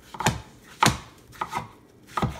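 A kitchen knife chopping through cantaloupe and striking a wooden cutting board: three chops, about half a second apart.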